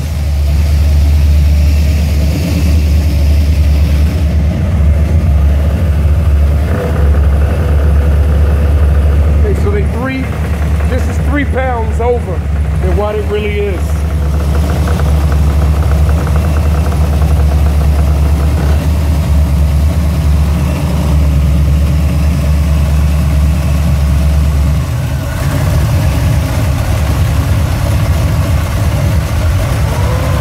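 Buick 455 big-block V8 idling steadily with a deep, even drone. About 25 s in, the low drone eases and its sound changes.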